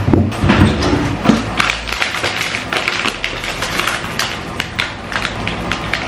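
Plastic packet crinkling and rustling in the hands as it is opened, a dense run of crackles throughout.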